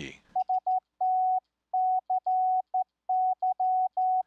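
Morse code hand-sent on a straight key: a single steady sidetone keyed on and off in uneven dots and dashes.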